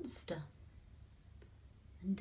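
A brief voiced sound at the very start, with a sharp click, then quiet room tone broken by a couple of faint clicks.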